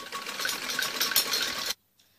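Domestic sewing machine stitching steadily as piping is sewn onto net fabric, then cutting off suddenly near the end.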